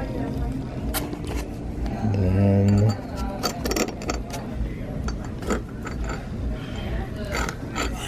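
A metal eye screw turned by hand through a steel L-bracket into foam, giving a run of small metallic clicks. A short hummed voice sound about two seconds in is the loudest thing.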